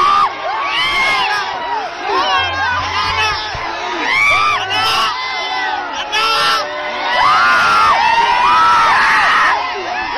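A dense crowd of fans shouting and cheering, many voices yelling over one another, loud and without a break.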